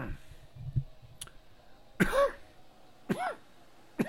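A man clearing his throat twice, two short rasping vocal sounds about a second apart in the second half, the first the louder, after a faint click about a second in.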